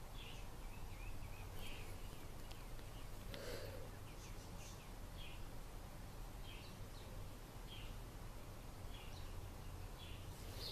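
Faint bird chirps, short high calls repeating about once a second, over a steady low background hum.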